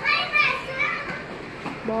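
A young child's high-pitched voice in the first second, followed by the narrator's voice starting again near the end.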